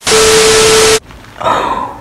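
Burst of TV static with a steady tone through it, a test-pattern glitch sound effect, about a second long and cutting off suddenly.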